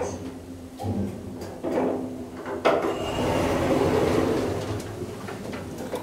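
Schindler Eurolift elevator doors sliding open as the car arrives at a floor: a few clunks, then a rumbling slide that swells from about three seconds in and fades near the end.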